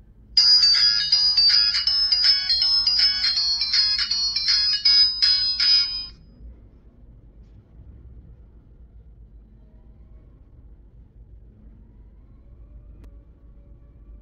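Tezilon 4G kids' smartwatch playing its start-up jingle through its small built-in speaker as it powers on: a tinny melody of quick notes, lasting about six seconds.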